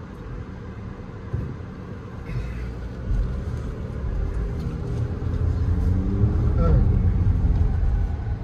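Infiniti QX50's turbocharged four-cylinder engine heard from inside the cabin as the car pulls away and accelerates. Engine note and road rumble build up over the last few seconds, with the engine's pitch climbing steadily.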